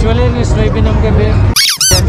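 Busy fairground background of crowd chatter. About one and a half seconds in, the background cuts out for a short edited sound effect of two quick falling squeaky tones, a 'boing'-like transition between shots.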